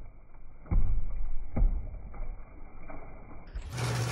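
Water from a bath tap falling onto plastic soap bottles in a bathtub, muffled with no high end, with two dull thumps about a second apart. Clearer, full-range splashing comes back near the end.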